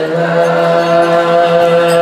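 A male singer chanting sholawat into a microphone, holding one long steady note.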